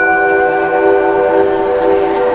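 Synthesizer holding a sustained chord, with two higher notes fading out after about a second and a half.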